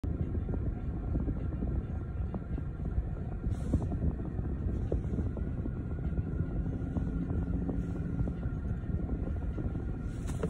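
Steady low rumble inside a car cabin, with a few faint clicks scattered through it.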